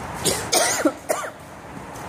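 A woman coughing, a couple of short voiced coughs in the first second or so, then quieter.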